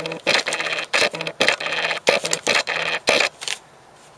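A rolled-up newspaper being unrolled and opened out by hand: a quick run of crackling paper rustles that stops about half a second before the end.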